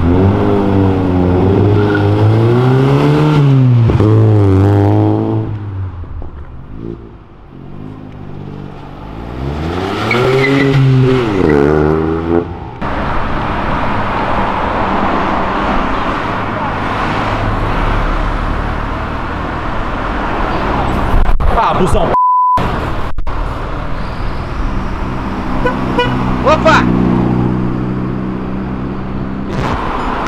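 Honda Civic VTEC four-cylinder engine revved twice while stationary, each rev rising and falling in pitch. This is followed by street traffic noise and voices, with a short censor bleep about two-thirds of the way through.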